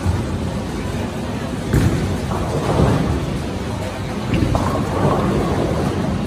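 Bowling alley din: a steady low rumble of balls rolling down the lanes, with a sharp clatter of pins about two seconds in.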